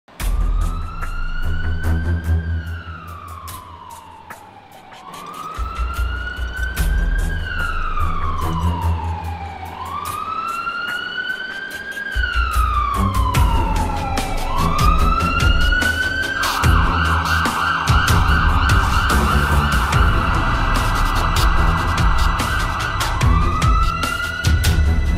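Emergency-vehicle siren wailing in slow rising-and-falling sweeps, each about four to five seconds long, switching to a fast warble about two-thirds of the way through. Under it runs music with a steady beat, its bass coming in about five seconds in and growing fuller about halfway.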